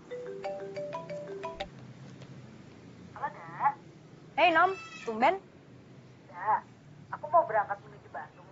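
A mobile phone plays a short melody of clear electronic tones, about eight notes in a second and a half. A woman then talks into the phone.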